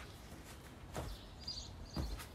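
Soft thumps about a second apart as people land and push off on a grass lawn doing burpees, with a bird chirping briefly about one and a half seconds in.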